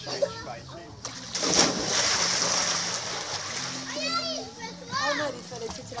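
A person jumping feet-first into a backyard swimming pool: one sudden splash about a second and a half in, with the water noise dying away over the next two seconds. Children's high voices call out afterwards.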